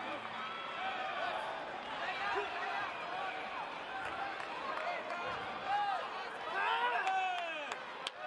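Many spectators' voices shouting and calling out at once during a taekwondo bout, with a louder burst of shouting about seven seconds in and a sharp knock right at the end.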